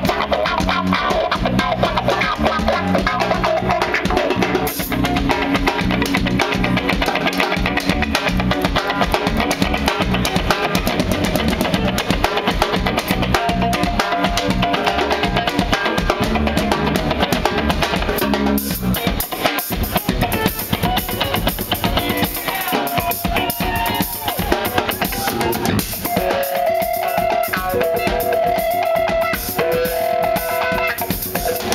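Live instrumental fusion band playing loudly: double-neck electric guitar over bass and a busy drum kit. Near the end the guitar holds long sustained notes.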